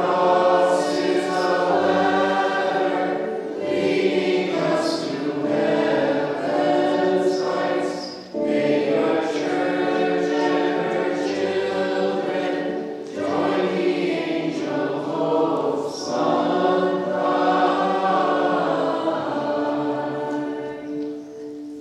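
A group of voices singing a liturgical church hymn in long sung phrases, with brief breaks between the phrases.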